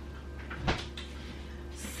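A kitchen cupboard door shutting: one short knock about two-thirds of a second in, over a low steady hum.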